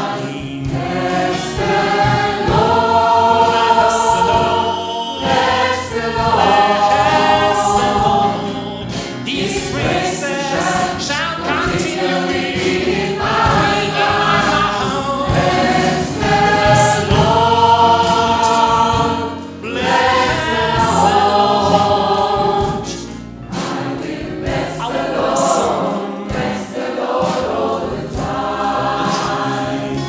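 A gospel choir singing through microphones, holding long chords.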